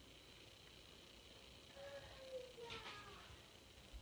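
Near silence, broken about two seconds in by one faint, drawn-out cat meow that falls in pitch.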